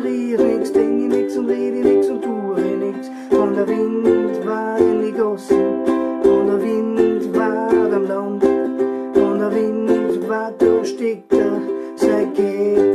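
Ukulele strummed in a steady reggae rhythm: an instrumental passage of repeated chords, with no singing.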